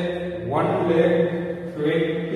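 A man's voice talking in a drawn-out, sing-song monotone, with a new phrase starting about half a second in.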